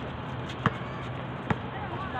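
A basketball bouncing on a hard outdoor court: two sharp dribbles a little under a second apart.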